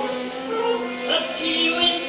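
Live stage-musical singing with orchestral accompaniment, several voices overlapping on sustained notes.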